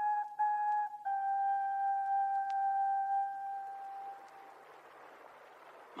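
Solo flute playing a slow musical bridge between two scenes of a radio play. A few short notes lead into one long held note that fades out about four seconds in, leaving faint hiss.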